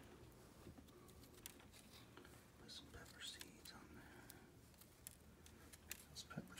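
Near silence, with faint scattered light ticks as pepper seeds are shaken onto a plastic food dehydrator tray.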